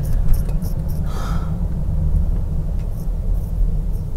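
Steady low rumble of a car driving at moderate speed, heard from inside the cabin.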